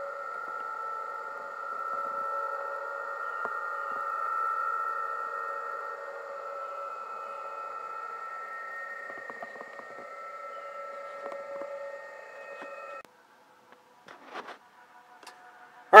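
PSK-31 data signals on the 20-meter band received by a Yaesu FT-857 HF transceiver: several steady warbling tones at different pitches over band hiss, a busy band with many stations. The audio cuts off suddenly about 13 seconds in.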